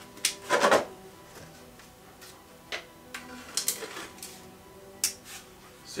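Light taps, knocks and scrapes of a hollow horn sheath being fitted by hand onto a skull's bone horn core, the loudest cluster under a second in, over faint background music.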